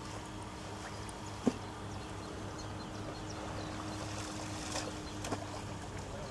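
A small boat's motor humming steadily, with a single sharp knock about one and a half seconds in.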